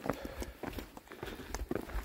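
Hiking footsteps on a rocky dirt trail: irregular crunches and sharp clicks as boots land on loose stones and gravel.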